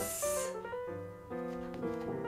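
Quiet background music: a slow run of held notes, with a brief hiss right at the start.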